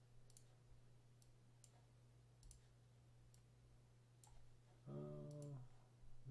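Faint computer mouse clicks, about a dozen scattered irregularly, over a steady low hum. Near the end a man's voice gives a short hum, the loudest sound here.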